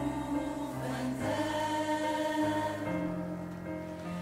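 Mixed choir singing sustained chords with a string orchestra, the low strings holding a bass line that steps to a new note about every second.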